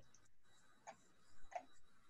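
Near silence: room tone with a few faint computer mouse clicks.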